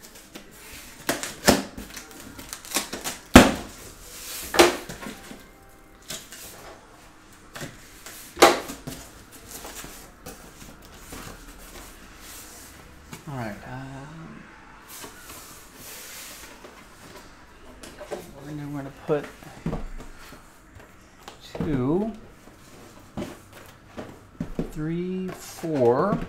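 Sealed cardboard hobby boxes being lifted out of a cardboard shipping case and set down on a table: a series of sharp knocks and cardboard handling, the loudest knock about three and a half seconds in. Later come a few short, low murmured words.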